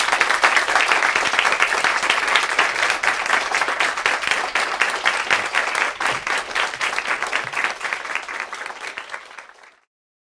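Audience applauding: many hands clapping steadily, then fading away near the end.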